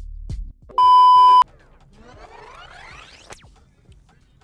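Music cuts off, then a loud, steady electronic beep lasts about two-thirds of a second. A quieter tone follows, sweeping steadily up in pitch over about a second and a half and stopping suddenly.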